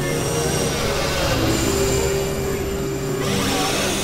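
Experimental synthesizer noise music: a dense, grinding drone with steady held tones over it. A low held tone comes in about one and a half seconds in, and thin high tones switch on and off.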